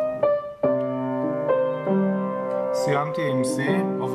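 Upright piano played with both hands: chords and melody notes struck several times in the first two seconds and left to ring.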